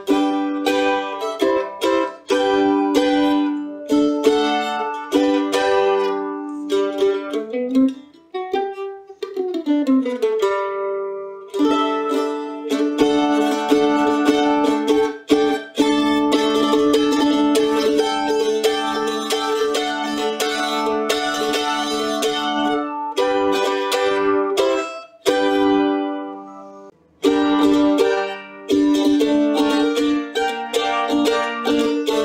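Suzuki A-style eight-string mandolin played with a pick: picked chords and single notes, with a note sliding up and back down about eight seconds in. Then comes a long stretch of rapid repeated picking on held notes through the middle, with two brief breaks near the end.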